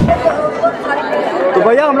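Voices of people talking, with a man starting to speak near the end.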